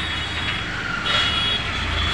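Steady background street-traffic noise with a low rumble that grows stronger about a second in, and thin, steady high-pitched tones over it.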